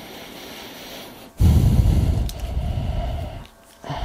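A loud rush of breath blowing onto the microphone, starting about a second and a half in and lasting about two seconds, heaviest in the low end, over a faint steady hiss.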